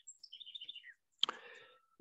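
Faint bird chirps: a quick run of short, high notes in the first second. About a second later come a short click and a brief soft hiss.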